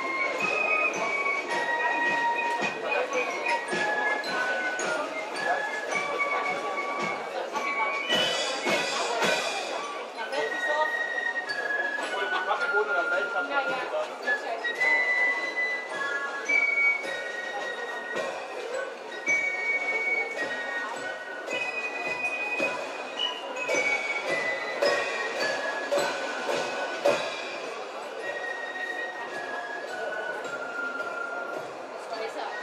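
A Spielmannszug (German corps of drums) playing a march: a high melody on fifes over snare drums, bass drum and cymbals, with cymbal crashes about eight seconds in and again later.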